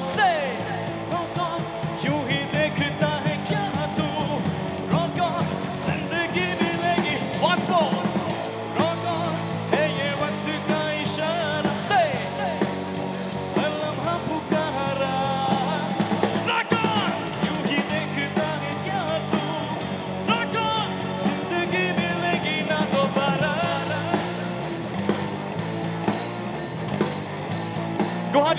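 Live rock band playing, with drum kit and electric guitars and a singing voice over them.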